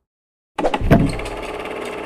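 Production-company logo sting sound effect: silence, then about half a second in it starts with a sudden hit and runs on as a steady buzzing rattle.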